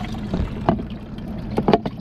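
A skiff's live well pump running, with water trickling into the well over a steady low hum. A few sharp knocks come as a plastic cup is handled and set down against the hull.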